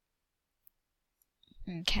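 Computer mouse clicks: two faint ticks, then one sharp click near the end as a voice starts speaking.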